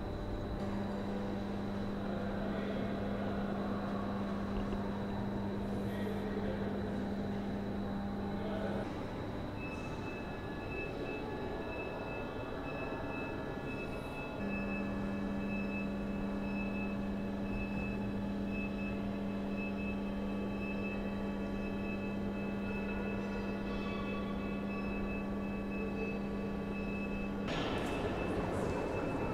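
A steady mechanical hum with a low drone over background noise. The drone cuts out about nine seconds in and starts again about five seconds later, and a higher steady whine joins it from about nine seconds in.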